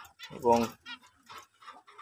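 Short, faint chirps of caged finches, heard under and after a single spoken word.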